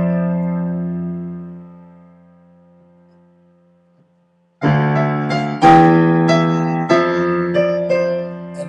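Digital keyboard in a piano voice: a chord is held and fades away over about three seconds, then after a short silence a new chord is struck about halfway through, followed by more chords and melody notes.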